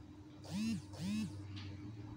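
Two short voiced sounds from a person, each about a third of a second and rising then falling in pitch, like a two-note "mm-hmm". A steady low hum runs beneath them.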